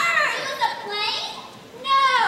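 High-pitched voices whooping and squealing. The loudest calls come at the start and again near the end, and each one falls in pitch.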